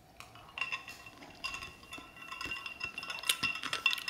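Ice cubes clinking inside a stainless-steel insulated tumbler as it is handled: a scatter of small sharp clicks with a faint ringing, growing busier toward the end.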